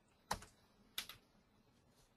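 Two short clicks of computer keys, about two-thirds of a second apart, the second followed closely by a smaller click.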